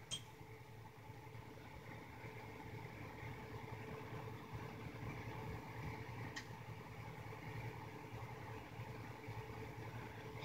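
Faint steady hum of room tone, with a low drone and a steady mid-pitched tone, and a soft click about six seconds in.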